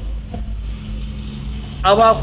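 Low steady rumble with a faint hum under it. A man's voice starts near the end.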